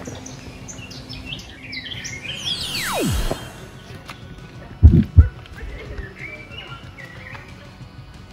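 Small birds chirping, broken by one long descending swoosh that falls from a high whistle to a deep rumble, then two deep thuds in quick succession about five seconds in, the loudest sounds. Faint birdsong continues afterwards.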